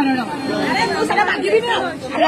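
Only speech: people talking over one another, with no other sound standing out.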